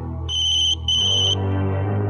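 Mobile phone ringing with a high electronic trilling ringtone: two short rings of about half a second each, close together, over background music.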